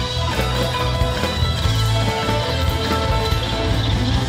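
Live Irish rock band playing an instrumental passage: strummed acoustic guitar over drums and bass, with fiddle and mandolin.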